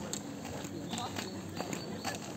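Walking footsteps on a dirt trail: short sharp knocks about two a second, with people's voices nearby.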